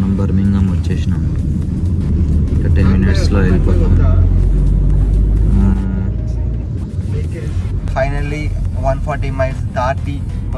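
Car cabin noise while driving: a steady low road and engine rumble, heavy for the first six seconds and then lighter, with people talking over it.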